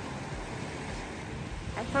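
Small waves washing up on a sandy beach: a steady rush of surf.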